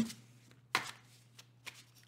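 Tarot cards being handled: a sharp tap a little under a second in and a softer click near the end, as a deck is picked up and its cards knocked together.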